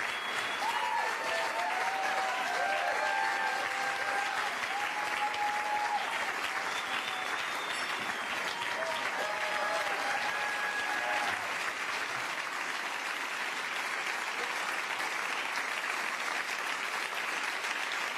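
Theatre audience applauding steadily after a song, with voices calling out over the clapping through the first ten seconds or so.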